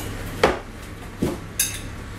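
Clatter of dishes and cutlery as a meal is plated in a kitchen: a few short clinks and knocks, the sharpest a ringing clink about a second and a half in.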